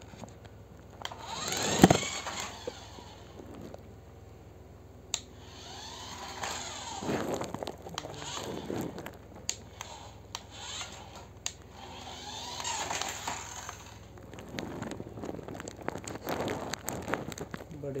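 Small electric motor of a battery remote-control toy car whining in repeated surges that rise and fall in pitch as it speeds up and slows, four times over. Sharp clicks are scattered through it, with a loud thump about two seconds in.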